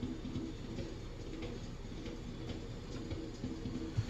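A vinyl jazz record starting to play faintly and muffled on a turntable, with a few light ticks from the needle and handling.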